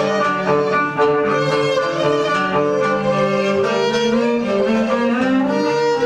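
Live acoustic music led by violin over other bowed strings, playing long, sustained notes in several parts.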